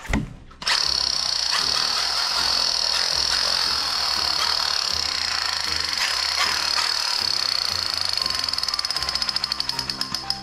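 Battery-powered toy rifle's electronic firing sound: a loud, steady buzzing rattle with a high whine. It starts just under a second in and breaks into rapid separate pulses near the end.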